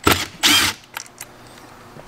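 Cordless drill with a T25 Torx bit backing a screw out of the aluminium heater body, in two short bursts within the first second, followed by a few faint clicks.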